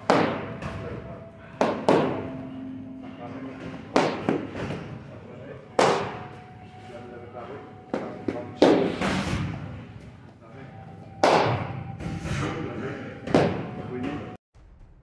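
Sharp thuds of training strikes, gloved punches and swung foam training sticks, about seven of them at uneven intervals of roughly two seconds. Each rings out briefly in a large hall, with faint background music under them.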